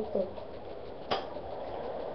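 One sharp snap about a second in as a homemade paper rubber-band gun is released, firing only weakly. Faint room hiss follows.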